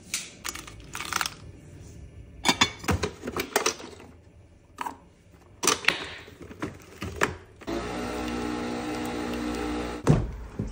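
Clicks and knocks of a capsule coffee machine being handled and closed, followed near the end by a steady machine hum as the coffee machine runs, cutting off suddenly.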